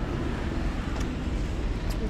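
Steady low rumble of city street noise with wind buffeting the microphone, and two short clicks, one about a second in and one near the end.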